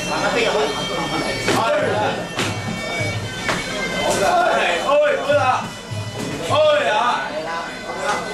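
Sarama, the traditional Muay Thai fight music: a reedy, bagpipe-like Thai oboe (pi) playing a wavering melody over a steady drum beat of about two a second.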